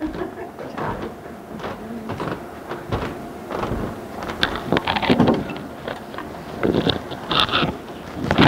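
Irregular knocks, thumps and shuffling footsteps on a wooden stage floor, with handling clatter as an acoustic guitar is picked up. A few heavier thumps come about three to four seconds in.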